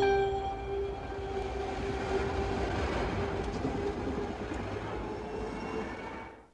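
Light rail train passing close by: a steady rumble of wheels on rail with a sustained humming tone. It starts abruptly and fades out near the end.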